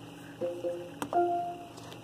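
Short electronic tones from the car's audio system as the audio source is switched: a brief tone about half a second in, then a click and a longer single tone about a second in.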